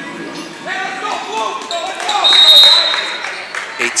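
Crowd voices and chatter in a gymnasium during a stoppage of play, with a short, high, steady tone a little past the middle that is the loudest sound.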